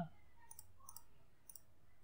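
A handful of faint computer mouse-button clicks as numbers are entered one by one on an on-screen calculator.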